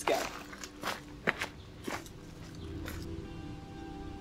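A hiker's footsteps, about five separate steps in the first three seconds. Soft background music comes in about two and a half seconds in and carries on to the end.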